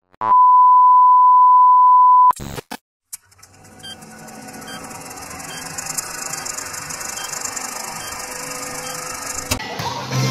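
Film-countdown intro sound effects: a steady beep tone held for about two seconds, a few clicks, then a hiss with faint regular ticks that swells gradually toward the end.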